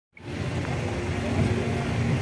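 Road vehicle running, a steady low rumble of engine and road noise. It cuts in abruptly a fraction of a second in.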